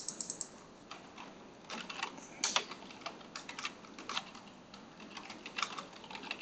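Typing on a computer keyboard: irregular runs of quick keystrokes with short pauses between them.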